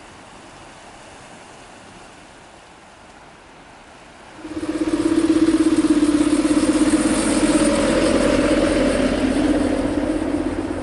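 Faint, even sea ambience, then about four and a half seconds in a sudden jump to a loud road-going tourist train passing close. Its engine makes a steady low drone with a fast flutter.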